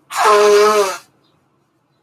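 A woman sneezing once, loudly, the sneeze lasting just under a second.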